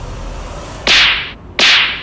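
Two identical whip-crack dramatic sound effects, about three quarters of a second apart, each a sharp crack that fades away within half a second.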